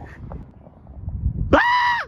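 A short, high-pitched squeal about one and a half seconds in, holding one steady pitch for about half a second before it stops.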